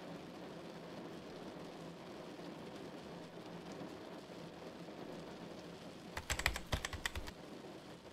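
Fast typing on a computer keyboard: a quick run of keystrokes about six seconds in, lasting about a second. It sits over a steady hiss of heavy rain.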